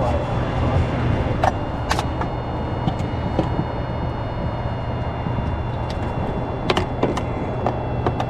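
Steady low motor hum with a faint high whine running under it, broken by a few sharp clicks and knocks about a second and a half in, at two seconds, and twice more near the end.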